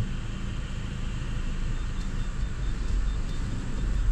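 Car engine running at low speed, heard from inside the cabin as a steady low rumble that gets a little heavier about two seconds in. A faint, regular high beeping starts partway through.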